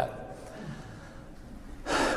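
A pause in a man's talk, with faint room tone, ended near the end by a quick intake of breath close on his lapel microphone before he speaks again.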